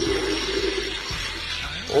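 Toy Ghostbusters proton pack firing its blaster sound effect through its built-in speaker: a steady rushing hiss with a low hum under it, easing off a little after the first second.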